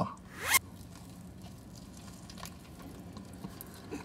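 A bite into a crispy fried chicken sandwich on a toasted baguette, with a short crunch about half a second in. Faint chewing follows.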